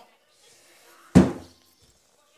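A single heavy thump about a second in, dying away within half a second.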